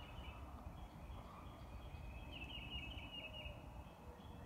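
Faint birds chirping, with a quick series of high chirps about two and a half seconds in, over a steady low rumble.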